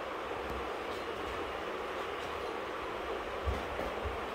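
Steady background noise, even and without words, with a couple of soft low thumps near the end as a toddler moves about handling a sofa cushion.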